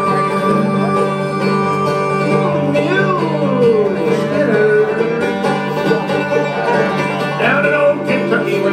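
Live bluegrass band playing on banjo, mandolin, acoustic guitar and upright bass, with a long held high note early on and a winding melody line after it.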